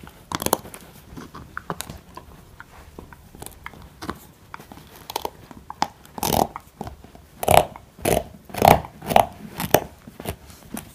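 Siberian husky puppy gnawing a hollow bone: irregular clicks and scrapes of teeth on bone. They grow louder and come in bigger bites from about the middle on.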